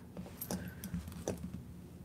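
Metal costume jewelry clinking lightly as it is handled: a handful of small, separate clicks and taps.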